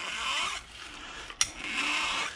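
Flat file scraping across the steel flange of a Detroit TrueTrac differential carrier in two rasping strokes, with a short click between them. The file is taking burrs off the bolt holes and edge to prep the surface for the ring gear.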